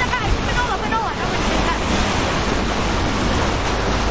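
Wind buffeting the microphone and water rushing past a moving passenger boat: a steady noisy rush with a low rumble underneath.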